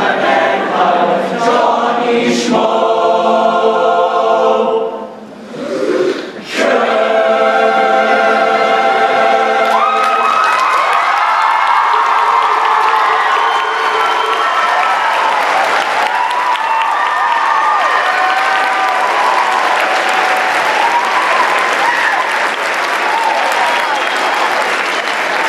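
Young men's choir singing the closing bars of a song, with a short break about five seconds in and then a long held final chord. About ten seconds in the chord ends and audience applause and cheering take over.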